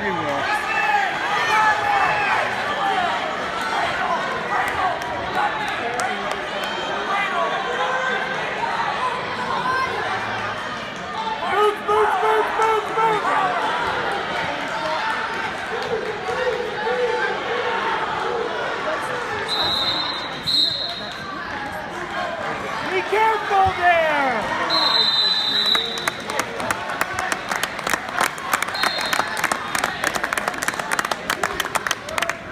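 Spectators in a gym shouting and cheering over one another throughout. A few short, high whistle blasts sound in the second half, and clapping starts near the end as the bout finishes.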